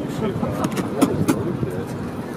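A group of men laughing and talking excitedly, with a few sharp clicks and knocks among the voices.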